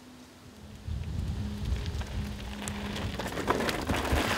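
Crackling hiss of hardtail mountain-bike tyres rolling over loose gravel and stones, with a low rumble. It sets in about a second in and grows, with a few small stone ticks near the end.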